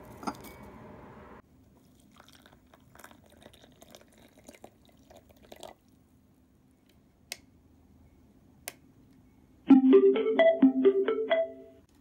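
Faint trickling and light clinks, typical of water poured into a glass teacup, with two sharp clicks after it. About two seconds from the end a retro tabletop radio comes on loudly as its knob is turned, playing a quick run of musical tones.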